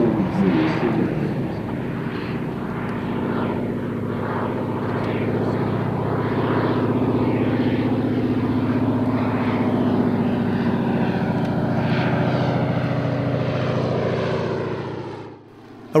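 De Havilland Canada DHC-2 Beaver's nine-cylinder Pratt & Whitney R-985 Wasp Junior radial engine and propeller in a slow, low flypast: a steady drone that fades out near the end.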